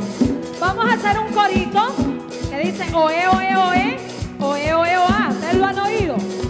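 Catholic worship song: a voice singing a melody over a band with a steady percussion beat.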